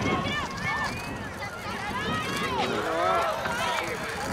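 Several voices shouting and calling across a youth soccer field, overlapping and rising and falling in pitch, with no clear words.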